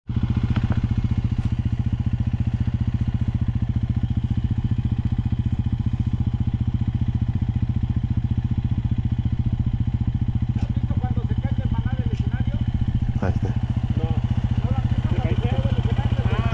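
Dirt bike engine idling steadily close by with a fast, even pulse. Faint voices come in over it in the second half.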